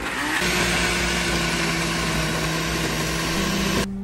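Countertop blender motor spinning up and running steadily as it purées chunks of cucumber, green apple and leafy greens into a smoothie. Its pitch steps up slightly about three seconds in, and it cuts off just before the end.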